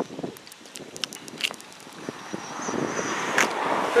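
A vehicle approaching on the road, its road noise growing steadily louder through the second half, after a few light clicks in the first half.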